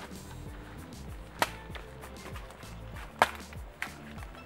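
Machete chopping into coconuts in three sharp strikes: one about a second and a half in, then two close together near the end. Background music plays underneath.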